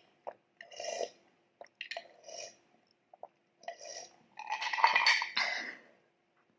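Close-miked mouth sounds of drinking water from a glass: a series of short gulps and swallows, then a longer, louder sound in the last second and a half.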